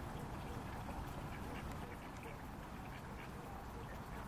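Domestic ducks giving quiet, short quacks now and then while foraging in grass, over a low steady rumble.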